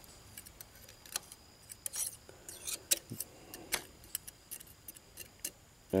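Faint, scattered clicks and light scrapes of a steel pick against the metal parts inside a Roosa Master rotary injection pump's governor housing, picking through the black debris left by a disintegrated governor ring.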